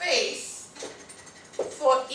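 Dry-erase marker squeaking against a whiteboard in short strokes, with snatches of speech.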